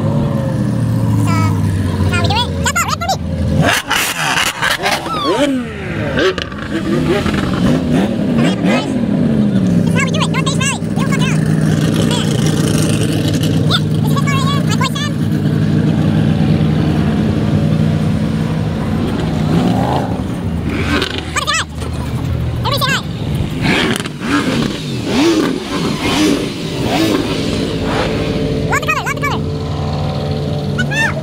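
Car engines running in a slow-moving line of sports cars, with a steady drone broken by several revs that rise and fall in pitch during the first nine seconds or so.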